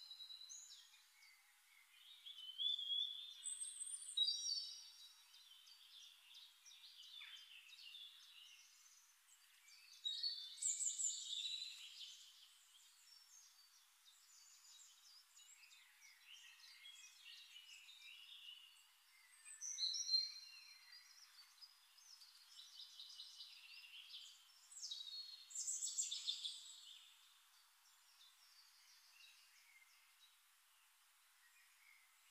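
Birds chirping and singing, many short calls overlapping, with several louder spells and quieter stretches between.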